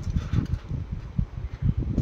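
Handling noise from hands moving a gold-plated chain about on a wooden tabletop: a quick run of soft, irregular low knocks and rubs.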